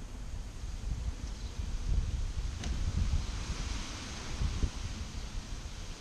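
Wind buffeting the microphone with a low rumble, and leaves rustling, briefly louder about three seconds in; one faint click about two and a half seconds in.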